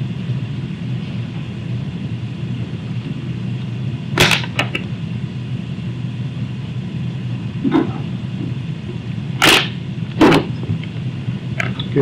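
Steady low background hum, with about four brief soft noises spread through it.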